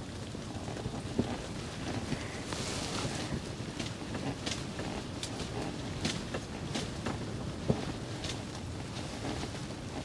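Steady low hiss of background noise inside an ice-fishing shelter, with a few faint clicks and taps scattered through it.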